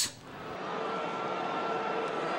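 A steady rushing noise with faint held tones in it. It swells in about half a second in and then holds level.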